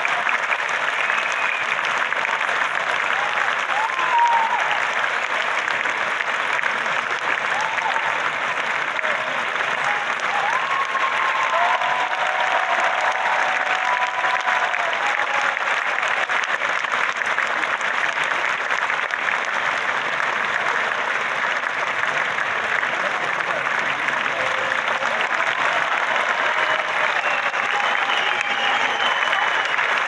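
Large audience applauding steadily throughout, with a few brief voices heard over the clapping.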